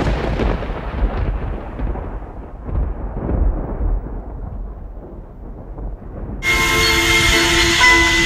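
A thunder-like boom: a sudden crash that rolls off into a long, fading rumble, swelling again about three seconds in. About six and a half seconds in, music with bell-like mallet tones comes back in.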